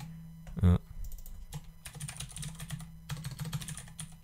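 Computer keyboard typing: an uneven run of keystroke clicks as a name is typed in. A brief vocal sound comes just under a second in.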